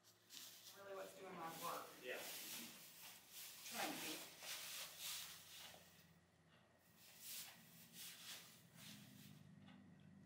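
Quiet, indistinct voices over rustling straw bedding as the foal gets up and moves about, busiest in the first half, then quieter.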